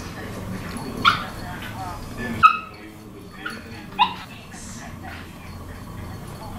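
Small dogs playing and barking, with three sharp, high yips about one, two and a half, and four seconds in, and a softer one between the last two.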